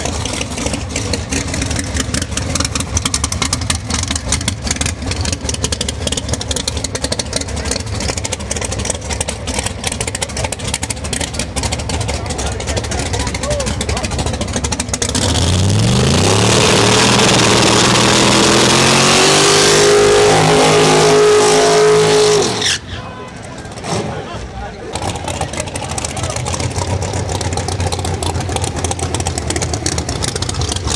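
Chevy Cobalt drag car's V8 idling with a loose, lumpy rumble, then revved hard in a burnout for about seven seconds, its pitch climbing over the hiss of spinning rear slicks. About eight seconds before the end the revs cut off suddenly, and the engine drops back to a rough idle.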